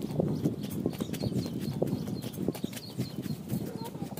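Irregular light taps and clicks over a low, steady rumble, with a few faint high chirps.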